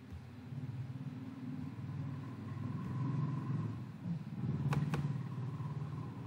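A low rumble of background noise that swells and fades, with a quick double click of a computer mouse near the end.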